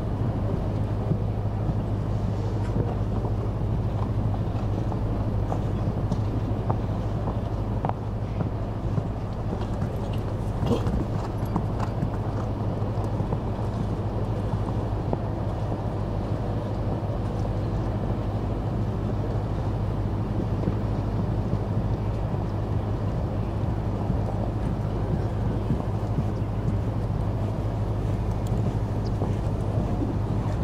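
Steady low rumble of wind on the microphone, with faint hoofbeats of a horse cantering on a sand arena.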